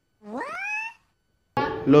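A Minion cartoon character's voice: one short, squeaky cry that rises steeply in pitch, lasting under a second, edited in between stretches of total silence.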